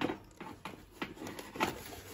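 Small porcelain baking dish being slid back into its cardboard display slot: a sharp knock at the start, then a few light knocks and scrapes of the ceramic against the cardboard and the other dishes.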